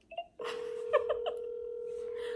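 A phone's ringback tone heard through its speaker: one steady ring about two seconds long, starting about half a second in. It means an outgoing call is ringing and has not yet been answered.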